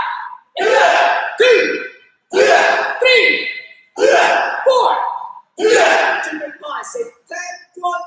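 Voices shouting counts in a steady rhythm, roughly one every second and a half, as a taekwondo class drills punches in time.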